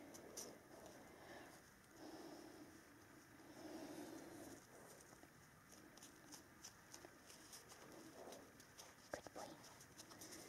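Near silence: faint rustling and small clicks of fingers pressing and smoothing athletic tape on a dog's ear, with two faint low hums about two and four seconds in.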